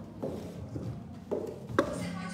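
Four short knocks, spread out, the last one near the end the sharpest and loudest.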